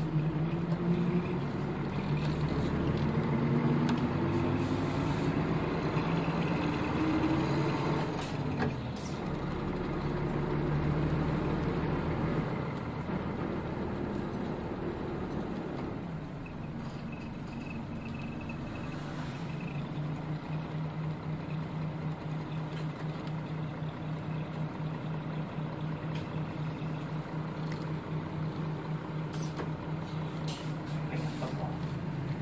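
Nissan Diesel KL-UA452KAN city bus's diesel engine, heard from inside the bus. The engine pulls hard, rising in pitch twice over the first eight seconds as the bus accelerates through the gears. It eases off from about twelve seconds as the bus slows, then idles steadily for the second half.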